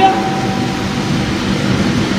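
Steady rushing background noise with a faint low hum, fairly loud and unchanging.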